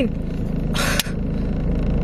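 Car engine idling, a steady low hum heard from inside the cabin. A short hiss comes a little under a second in, ending in a click.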